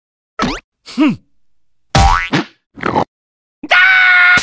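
Cartoon sound effects: a few short springy, boing-like noises with bending and sliding pitch. Near the end comes a loud, high, sustained yell from a cartoon larva character.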